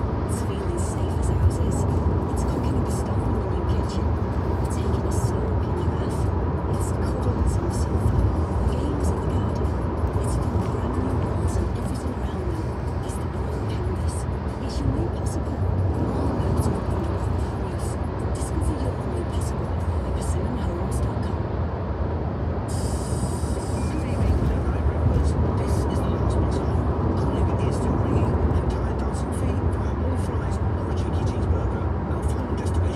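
Steady road and engine rumble inside a moving car at motorway speed, with music and voices playing over it.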